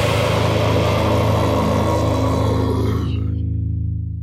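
The closing chord of a progressive metalcore (djent) song, with low distorted guitars and bass holding one sustained chord. The higher wash dies away about three seconds in while the low notes keep ringing out.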